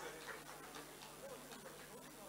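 Quiet hall ambience: faint, indistinct talk between people on stage, with a few soft clicks over a low steady hum.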